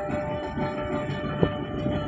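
Steady low rumble of a car driving along a road, with music playing over it in sustained tones and one short click about one and a half seconds in.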